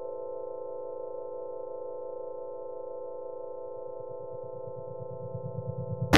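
A steady synthesizer chord of several held tones, the sustained tail of a news program's intro jingle.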